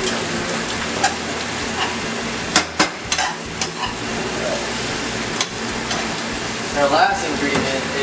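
Rice noodles and Chinese broccoli sizzling steadily in a hot frying pan as they are stir-fried. A few sharp clicks and knocks come about two and a half to three and a half seconds in, and one more past the middle.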